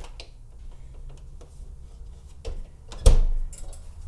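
GE portable dishwasher door pushed shut with one loud thud about three seconds in, followed by a few quick clicks from the machine as it starts its wash cycle. Faint ticks come before the thud.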